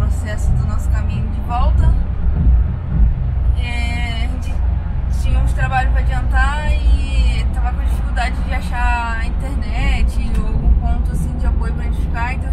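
A woman talking inside the cabin of a moving car, a Mitsubishi Pajero TR4, over a steady low rumble of engine and road noise.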